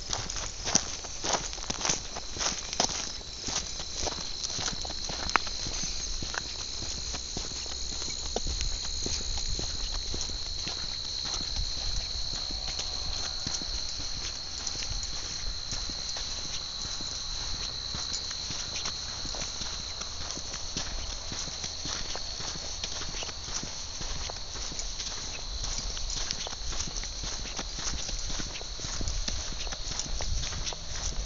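Footsteps on a sandy dirt track, most distinct in the first few seconds, over a steady high-pitched chorus of crickets chirping.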